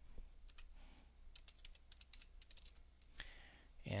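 Computer keyboard being typed on: a couple of faint keystrokes, then a quick run of about a dozen more as a word is typed out.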